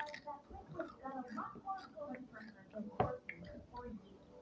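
Crunchy Fuego Takis rolled tortilla chips being chewed, with small clicks and one sharp crunch about three seconds in, over faint voices.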